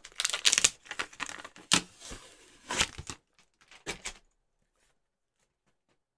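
A thin acrylic lid being handled and set onto a small aluminium-framed case, where magnetic tape on the lid meets steel strips round the edges. A scraping rustle at the start, then a few sharp taps about a second apart as the lid seats.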